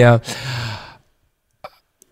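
A man's drawn-out "i..." runs into a breathy sigh that fades out within about a second. Silence follows, broken by a faint short tick just before he speaks again.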